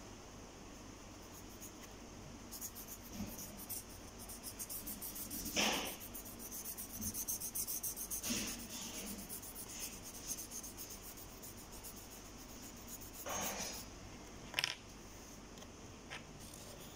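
Colouring on paper: quick back-and-forth strokes rubbing across the sheet, dense in the first half, with a few louder single strokes later on.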